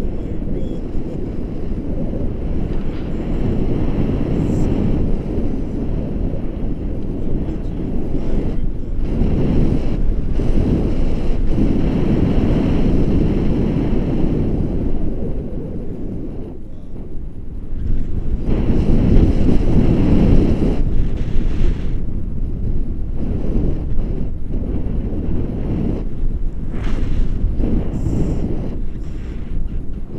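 Wind rushing over the microphone of a camera held out on a selfie stick in paraglider flight: a loud, low rumble that swells and eases, dipping briefly a little past the middle and strongest about two-thirds of the way through.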